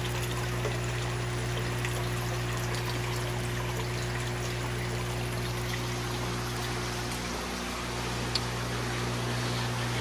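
Water from a pool pond's return pouring in and splashing steadily at the surface, with bubbles, over a steady low hum.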